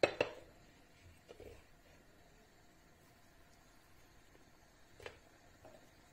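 Quiet room tone with a few faint, brief clicks: one right at the start, a softer one just over a second in, and another about five seconds in.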